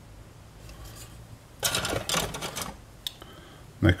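Plastic rustling and clatter from plastic model-kit sprues being handled, a dense burst lasting about a second starting about a second and a half in. A single short click comes near the end.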